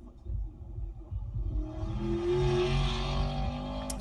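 A car's engine on a race track, played back from a video through a car's stereo speakers. The engine note grows louder from about a second and a half in.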